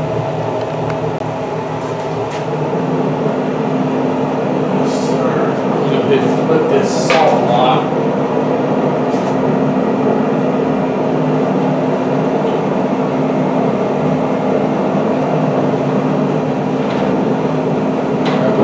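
Pellet grill's combustion fan running with a steady hum while the grill is up to heat, with a few short clicks and knocks partway through.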